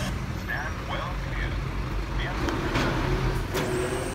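Front-loading refuse truck's diesel engine running as it moves off slowly, a steady low rumble.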